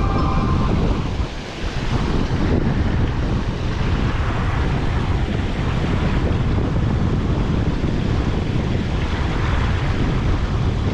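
Steady wind buffeting the microphone over the rush of river water, easing briefly about a second and a half in.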